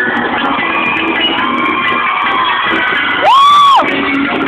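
Live band with electric guitars playing, heard through a phone's small microphone with little treble. An audience member near the microphone lets out a loud, high-pitched whoop that rises and falls near the end, with a fainter cheer in the middle.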